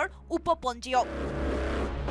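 Narration voice for about the first second, then about a second of steady rushing noise over a low rumble.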